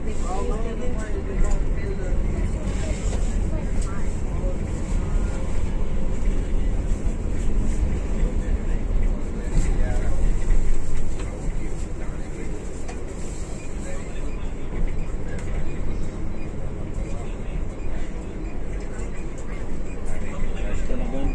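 Intercity coach running on the highway, heard from inside the cab: a steady low engine and road rumble. It becomes a little quieter about halfway through.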